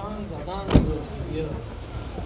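A car door slammed shut once, a sharp thud about three quarters of a second in, amid the voices of people nearby. The door is on a 2008 Toyota Corolla sedan.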